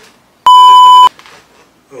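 A single loud electronic beep: one steady pure tone that starts and stops abruptly and lasts about two-thirds of a second, edited in over a cut like a censor bleep.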